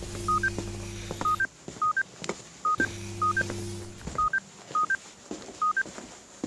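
Mobile phone ringing with an electronic ringtone of short two-note beeps, low then high, repeating about twice a second. Under the beeps a low buzz sounds twice, for about a second and a half each time.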